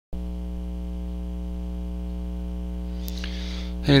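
Steady electrical mains hum, a constant buzz with many evenly spaced overtones, starting abruptly at the very beginning and holding unchanged throughout, with a faint click about three seconds in.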